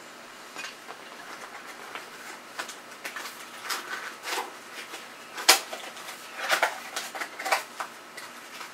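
Handling of a small cardboard parts box being picked up and opened: scattered light clicks, taps and rustles, with one sharp click a little past the middle.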